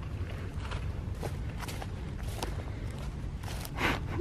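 Footsteps through grass and dry leaves, a scatter of faint crunches over a steady low rumble, with a louder rush near the end.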